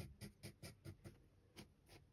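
Pencil sketching on paper in many short strokes, a faint scratching of about five strokes a second.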